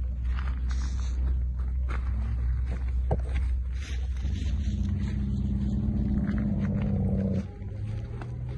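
Footsteps and rustling of tomato plants over a constant low rumble, with scattered small clicks. About four seconds in, a steady low-pitched drone with overtones sets in, lasts about three seconds and cuts off suddenly.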